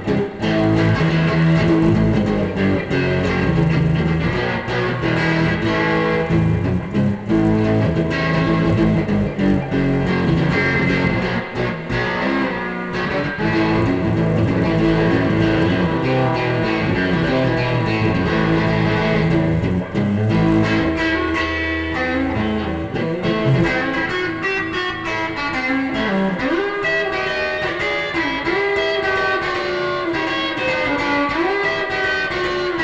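Amplified Stratocaster-style electric guitar being played continuously, with sustained notes and several string bends in the second half.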